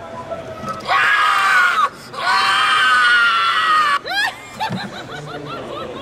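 A loud, high scream in two long cries, the first about a second long and the second about two seconds, followed by a quick falling cry and several short rising-and-falling cries.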